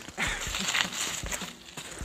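Scattered soft knocks and clicks, unevenly spaced, over a faint hiss.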